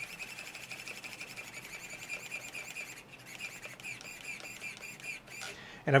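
Small RC steering servo whining as it drives the front wheels of a 1/14 WLtoys 144001 buggy, its pitch wavering as the steering moves. It is powered from a 5-volt BEC and works against the carpet under the tyres. The whine is faint and steady, with a brief dip about halfway through.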